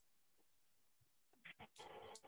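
Near silence: a pause before a reply, with a few faint clicks and a low hiss coming in near the end.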